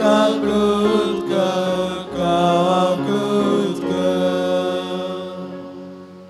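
Sung liturgical chant at Mass, slow held notes that change about once a second, fading out near the end.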